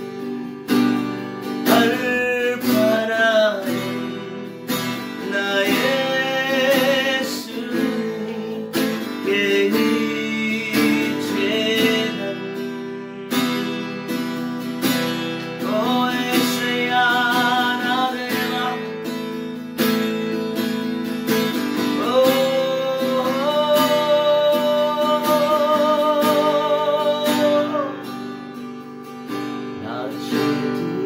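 A man singing a slow Telugu worship song, accompanying himself on a strummed acoustic guitar. His sung phrases carry vibrato, ending in a long held note about three quarters of the way through.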